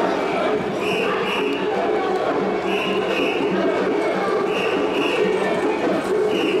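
A group of mikoshi bearers chanting together in a steady call that repeats about every two seconds, over a dense mass of crowd voices.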